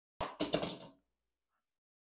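Plastic pH tester pen set down on a countertop: a sharp knock about a fifth of a second in, then a brief clatter of plastic on the counter.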